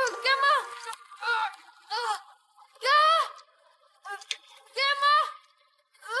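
A boy whimpering and crying out in pain: about six short, high-pitched cries, each rising then falling in pitch, the loudest about three seconds in.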